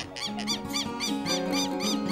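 A southern lapwing calling in a quick run of short, squeaky, arched notes, about four a second, over background music with held notes.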